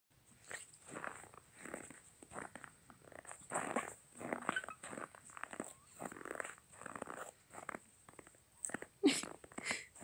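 Footsteps crunching in snow, about one to two steps a second, with a louder, sharper sound about nine seconds in.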